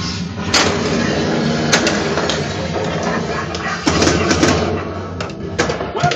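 Spider-Man pinball machine in play: the game's music runs under a string of sharp mechanical clacks from flippers, coils and the ball striking the playfield, bunched around a second in, in the middle and near the end.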